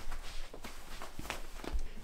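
Footsteps on an indoor floor: a few soft, irregularly spaced steps.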